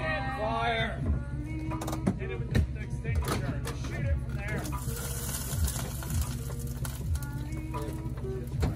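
Background music with a steady beat, with raised voices near the start, in the middle and near the end.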